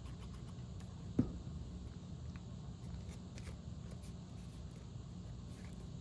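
Cardstock pieces being handled and pressed together after gluing: faint paper rustles and small taps, with one sharp tap about a second in, over a low steady room hum.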